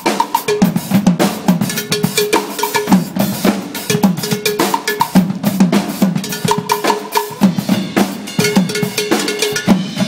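Live percussion group playing a fast, steady groove on congas, a drum kit and struck metal pots, with short runs of a ringing metal note like a cowbell repeated over the drums.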